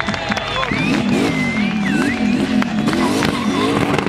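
Turbocharged V8 in a BMW E91 touring revved hard during a burnout, its pitch swinging up and down repeatedly from about a second in.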